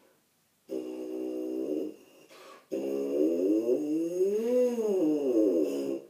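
A brass player buzzing into a tuba mouthpiece held on its own, without the instrument: a short steady buzzed note, then a longer, louder buzz that slides up in pitch and back down again like a siren.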